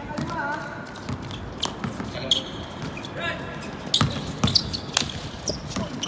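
A basketball bouncing on a hard indoor court during a game, heard as scattered sharp knocks among players' voices.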